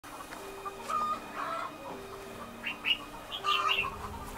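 Chickens clucking: a string of short calls scattered through, over lower drawn-out notes.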